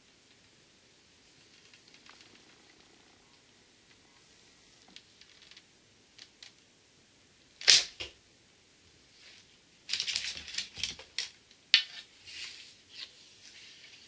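A bow shot: the bowstring released from full draw with a single sharp snap a little past halfway, the loudest sound. A couple of seconds later comes a quick run of clicks and knocks.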